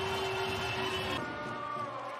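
Sports-hall crowd noise after a point, a steady murmur of many distant voices that turns quieter about a second in.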